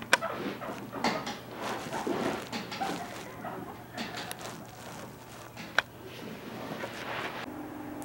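Guinea pigs moving about on carpet and making short, soft squeaks, with a few sharp, brief sounds standing out, one just after the start and one a little before six seconds in.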